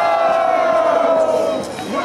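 A crowd of spectators hyping a dancer: one voice holds a single long shout that sinks slowly in pitch and breaks off near the end, over the general noise of the crowd.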